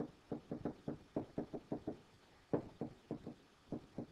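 A stylus tapping and knocking on a tablet screen while words are handwritten, in quick clusters of light taps separated by short pauses.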